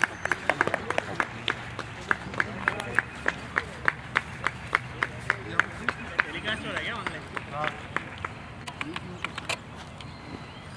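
Steady rhythmic hand clapping, about three claps a second, stopping shortly before the end, with voices talking faintly behind it.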